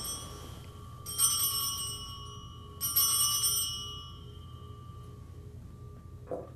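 Altar bells rung at the elevation of the consecrated host, marking the consecration. A ring that began just before is dying away, then the bells ring twice more, about a second in and about three seconds in. Each ring is a high, bright peal that fades over a second or so.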